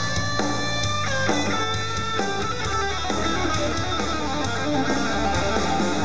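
Live rock band playing an instrumental passage, electric guitar to the fore over bass and drums. Long held notes ring out for about the first second, then the notes change every half second or so.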